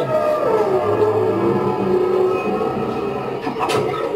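A drawn-out, wavering voice-like sound, held on long slowly bending notes like chanting or wailing.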